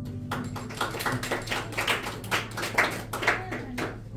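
The last sustained note of a piano and cello duo dies away, and then a small audience claps in irregular, separate claps until just before the end.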